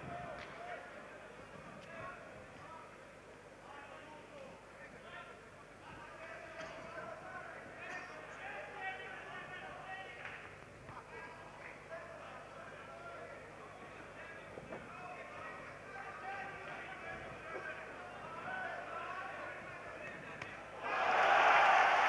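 Boxing-arena crowd murmuring and calling out, with a few scattered sharp knocks. About 21 seconds in, the crowd suddenly erupts into loud cheering.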